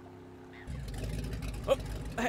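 Small outboard motor on a little boat (a cartoon sound effect) starting up about two-thirds of a second in and running with a rapid low putter. This is the motor that stalls moments later and won't restart.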